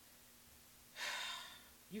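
A woman's short audible breath about a second in, sharp at the start and fading over about half a second, in a pause between sentences.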